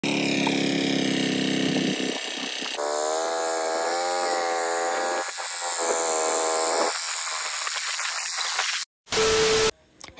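Engine of a walk-behind power tiller running steadily, its pitch and tone shifting abruptly a couple of times as the shots change. It cuts off about nine seconds in, followed by a short steady tone.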